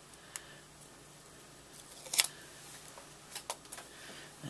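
Faint handling clicks and taps from a red rubber stamp die and its wooden mounting block being handled on a paper grid sheet: a few short ticks, the loudest about two seconds in and several close together near the end.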